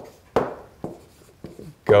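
Stylus on a tablet screen during handwriting: a few short sharp taps and strokes with quiet gaps between them. A man's voice starts one word near the end.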